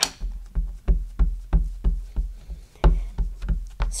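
Black VersaMark ink pad repeatedly tapped onto a clear stamp mounted in a MISTI stamping tool, inking it: a steady run of soft knocks, about three a second.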